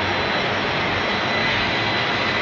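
Steady machine noise, an even rushing sound with a faint high-pitched whine running through it.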